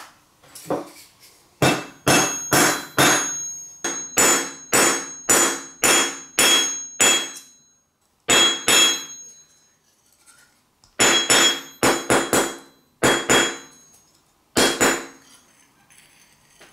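Hammer blows on the old knife's rusty steel tang resting on a steel bench anvil, knocking the knife apart. There are about two dozen sharp, ringing metal strikes in bursts, roughly two a second, with short pauses between the groups.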